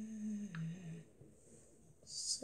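A girl's short closed-mouth hum, a 'mmm' that steps down in pitch and stops about a second in.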